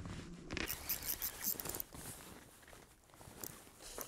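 Faint handling noise from an angler playing a hooked fish: rustling clothing and scattered light clicks and scrapes from the rod and spinning reel.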